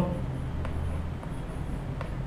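Chalk writing on a blackboard: a few faint taps and scrapes as letters are written, over a low steady room hum.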